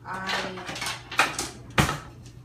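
Metal utensils clattering in a kitchen cutlery drawer as it is rummaged through for a knife sharpener, with two sharp clacks, the louder one near the end.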